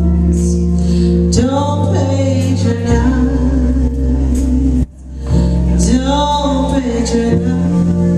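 Live small jazz band: a female singer holding long notes with vibrato, backed by keyboard, upright bass and drums. The sound cuts out briefly about five seconds in before the voice comes back in.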